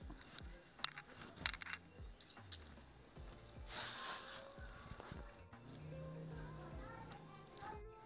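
Aerosol dry shampoo can spraying onto hair in a short hiss about four seconds in, among a few sharp handling clicks and rustles of hair. Faint background music plays underneath.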